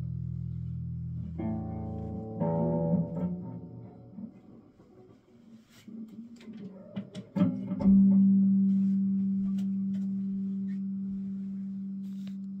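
Electric guitar through a small practice amp: chords ringing out and a few more strummed, then scattered clicks and handling noise, then a single low note struck about seven and a half seconds in and left to sustain, slowly fading.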